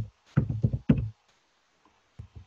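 Computer keystrokes picked up by the microphone as a quick run of about six dull knocks, within the first second, as a word is typed.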